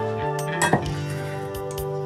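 Kitchen utensils clinking against a stainless steel mixing bowl a little over half a second in, over soft background music with held notes.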